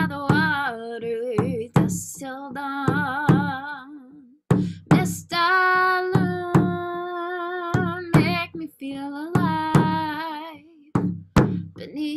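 A woman sings in long, wavering held notes over a hand drum struck with a padded beater at a slow, roughly once-a-second beat.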